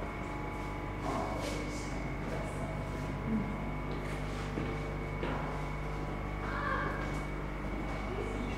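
Steady machinery hum of brewery plant with a thin high whine over it, and a few faint knocks and rustles as people walk through a doorway.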